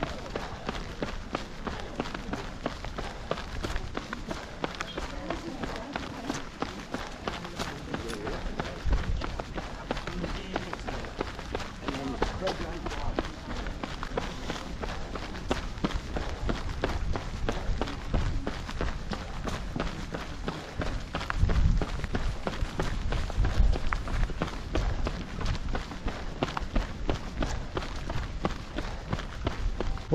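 A runner's steady footfalls on wet stone flagstones, stride after stride. Stronger low rumbles come through about 9 seconds in and again for a few seconds after the 21-second mark.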